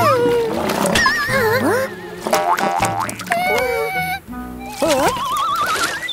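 Cartoon sound effects over background music: springy boings and sliding tones, a quick run of rapid clicks in the middle, and a long wavering rising tone near the end.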